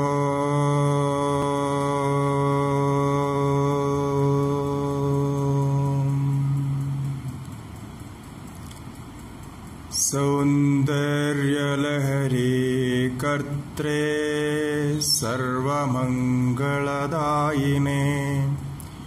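A man chanting a mantra into a microphone. He holds one long steady note for about seven seconds, pauses briefly, then chants a melodic invocation with rising and falling pitch.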